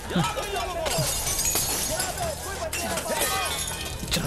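Action-film sound mix: a crash with shattering, crackling debris from about a second in, lasting a second or two, over shouting voices.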